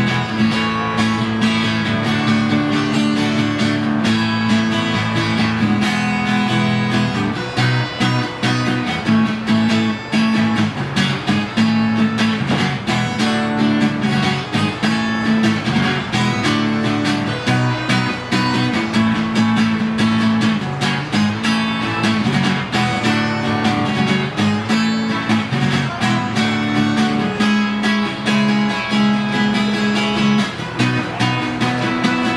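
Acoustic guitar strummed in a steady rhythm, played without singing.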